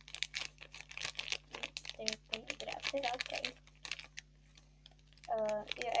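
Crinkly plastic wrapper of a toy packet being handled and pulled open: a quick run of crackles for about three and a half seconds, then a few more around four seconds in.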